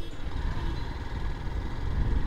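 Motorcycle engine running steadily while ridden slowly, heard as a low rumble.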